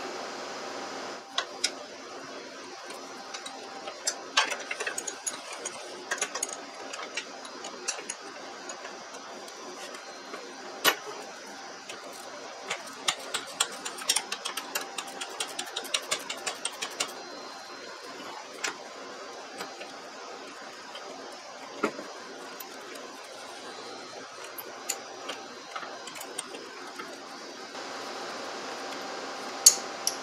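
Small metal clicks and knocks of hand tools and hardware as the steering control rod is removed from a Scag Tiger Cub zero-turn mower, with a rapid run of clicks about halfway through. A steady background hum runs underneath.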